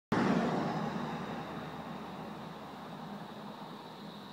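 A car passing close by: its noise starts suddenly at full strength and fades steadily as it drives away. A faint, steady high tone runs underneath as the car noise dies down.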